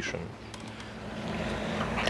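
A low, steady mechanical hum with a faint hiss above it, growing louder over the second half.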